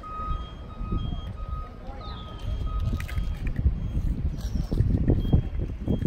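Low, uneven outdoor rumble that swells in the second half, with a thin steady tone for the first three seconds and a few faint high chirps.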